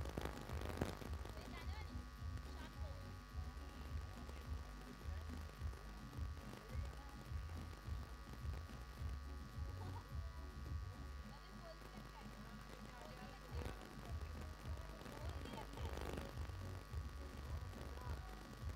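Faint, indistinct voices in the distance over a low steady hum, with no words that can be made out.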